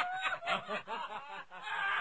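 Laughter in short, quickly repeated bursts.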